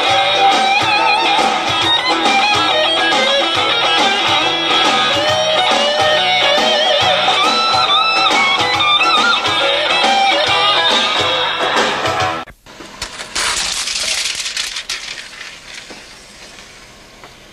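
Electric guitar playing a lead melody with bends and vibrato over a steady rhythmic backing, which cuts off abruptly about twelve and a half seconds in. A couple of seconds of hiss follow, then the sound fades low.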